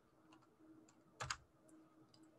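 Near silence broken by two quick clicks from a computer keyboard key, a little over a second in: the key press that advances the presentation slide.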